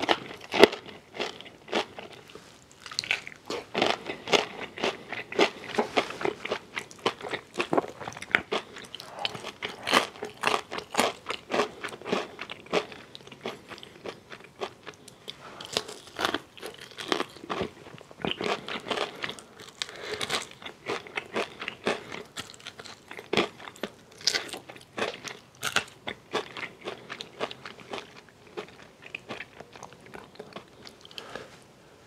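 Close-miked chewing and biting of crispy fried chicken: the crunch and crackle of fried batter breaking between the teeth, in quick irregular bursts, with wet chewing of the meat.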